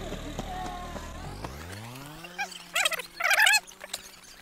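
A motor scooter engine running, its note climbing about a second in as the scooter pulls away, then holding a steady hum. A child's high voice calls out near the end and is the loudest sound.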